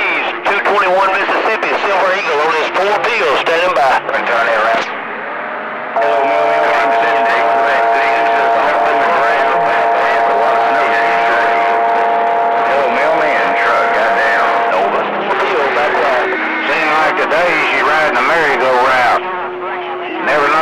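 Distorted, hard-to-follow voices coming through a CB radio receiver on the 11-metre band, as stations far away talk over each other. A set of steady whining tones sits under the voices for about nine seconds in the middle.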